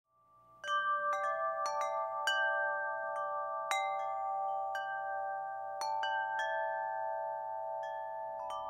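Wind chimes ringing: irregular strikes, beginning just under a second in, each adding clear metal tones that ring on and overlap one another.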